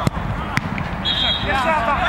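A football struck hard right at the start, with another sharp knock about half a second in, amid players' shouts; about a second in comes a short, high whistle blast, likely the referee's whistle.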